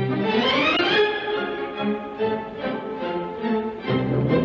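Orchestral film score led by bowed strings: a rising run sweeps up in pitch over about the first second, then settles into held notes.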